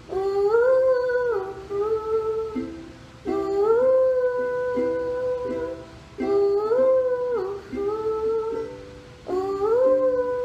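Ukulele strummed and plucked under a wordless sung melody by a woman, in four phrases about three seconds apart, each opening with an upward slide in the voice and then holding the note.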